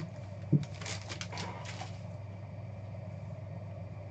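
Trading cards being handled by hand, sliding against each other with faint rustles, and one soft thump about half a second in, over a steady low electrical hum.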